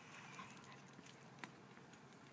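Near silence: faint outdoor background with one soft click about halfway through.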